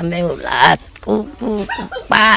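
Speech: an elderly woman talking in short phrases with brief pauses.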